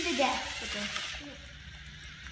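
A short burst of voices, then a faint steady hum from two Lego Mindstorms NXT sumo robots driving into each other and pushing on carpet.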